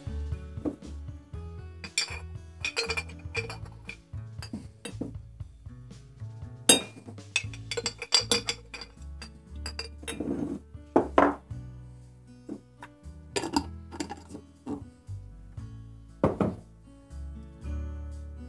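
Steel auger bit clinking and tapping against a glass jar as it is dipped in mineral spirits: a scattered run of sharp clinks, each with a short ring, the loudest about seven seconds in. Background music plays throughout.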